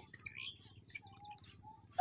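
Faint bird calls: a short chirp near the start, then two brief thin notes in the second half.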